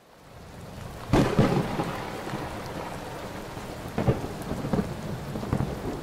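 Heavy rain fading in, with a loud clap of thunder about a second in and smaller rumbles near four and five seconds.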